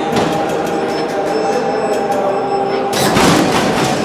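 Lowrider hydraulic pump motors whining as the car's hydraulics are worked, with a rapid run of clicks from the switches and solenoids in the first second and a half. A louder, noisier surge comes about three seconds in.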